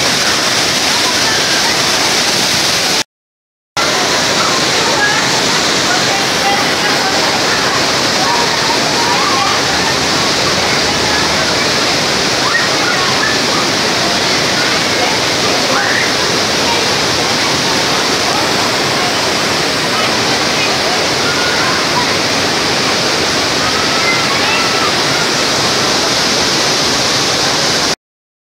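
River water rushing steadily over a low weir, with faint, distant voices of people in the water. The sound drops out completely for about half a second a few seconds in, then the rush carries on.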